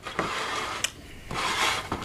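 Snack canisters being moved and slid on a plastic tray: two stretches of scraping with a sharp click between them, a little before halfway.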